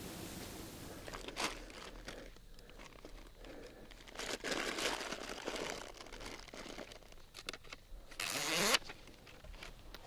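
Rustling and crinkling of gear being handled by a backpack, with a short, louder rasp near the end.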